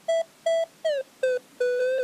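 A short electronic melody: about five clipped synthesizer notes with gaps between them, several sliding down in pitch, the last one held longer.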